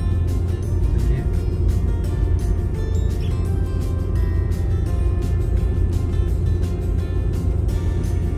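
Background music with a steady beat, over the low rumble of a car driving.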